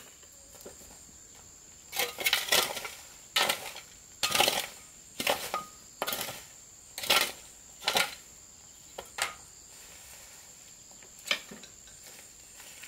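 Shovel scraping and scooping dirt and leaf litter off the ground, a sharp scrape-and-clatter about once a second for some six seconds, then a few lighter knocks. A steady high-pitched insect drone runs underneath.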